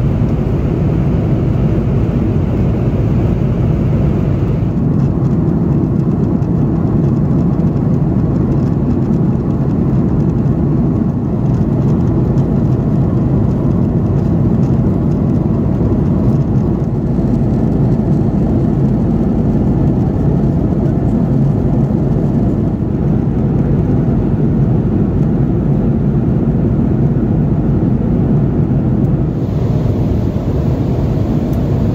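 Airliner cabin noise inside an Airbus A330-300 in cruise: a loud, steady, low rumble and hiss of engines and airflow. The higher hiss drops a little about four and a half seconds in.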